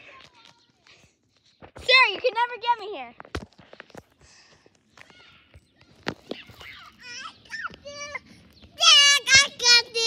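Children shouting and squealing at a high pitch: a burst about two seconds in, a few shorter calls around seven to eight seconds, and the loudest, a long shrill squeal near the end.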